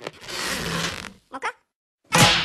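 Cartoon sound effect of an elastic goggle strap being stretched out, a long stretching, creaking sound lasting about a second, followed by two short sounds about a second and a half in.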